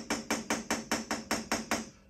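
Pen tapping in quick, even strokes on a whiteboard, about five a second, as a row of short lines is drawn one after another.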